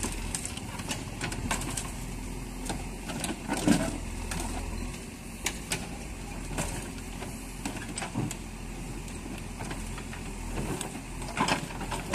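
JCB backhoe loader's diesel engine running steadily, with repeated sharp crunches and scrapes of crumpled car-body sheet metal as the bucket presses and drags the wreck. The loudest crunches come just before four seconds in and again near the end.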